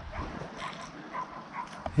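Quiet outdoor background with a few faint, short animal calls spread through it.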